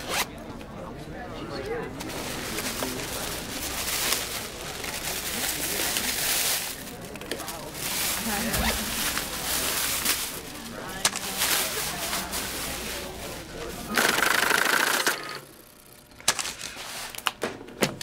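A thin plastic shopping bag rustling and crinkling in irregular stretches as it is handled to bag pill bottles, under the murmur of voices in the room.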